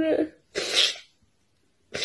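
A young woman sneezing twice, about a second and a half apart, the first following the tail of a drawn-out, wavering 'aah' wind-up.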